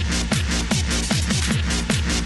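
Hardstyle dance music from a DJ set: a hard kick drum whose pitch drops on each hit, about two and a half beats a second (around 150 beats a minute), under sustained synth chords.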